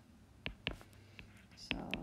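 A handful of short, sharp taps from a stylus on a tablet screen as handwriting is added, over a faint steady hum. A soft spoken 'So...' comes near the end.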